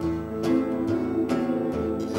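Live country band playing between sung lines: guitar strumming over a low bass line that steps from note to note.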